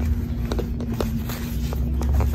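Paper pages of a children's activity book being turned by hand: a few soft rustles and clicks over a steady low rumble and faint hum.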